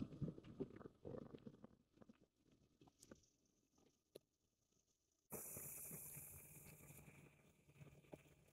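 Near silence: a few faint clicks in the first couple of seconds, then a faint steady hiss that cuts in abruptly about five seconds in.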